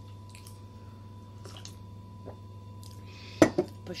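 Eating sounds: chewing and a sip from a glass of coffee, then one sharp knock a little over three seconds in as the glass is set down on the table.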